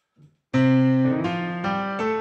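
Yamaha DGX-670 digital piano coming in about half a second in with a held chord that changes twice, opening a song.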